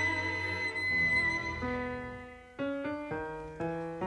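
Instrumental tango played by a tango orchestra. A violin holds a long note that fades away, and after a brief lull a short phrase of separate stepped notes on piano begins about two and a half seconds in.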